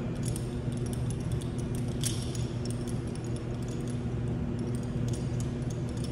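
Scattered light metallic clinks of carabiners and pulley hardware being clipped onto a dumbbell, over a steady low hum.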